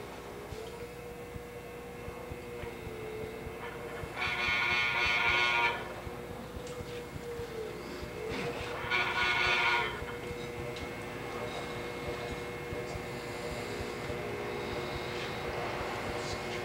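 Electric potter's wheel motor running with a steady hum that sags briefly in pitch now and then as hands press into a heavy pot of clay. Two loud horn-like tones cut in, one about four seconds in lasting a second and a half, and one about nine seconds in lasting about a second.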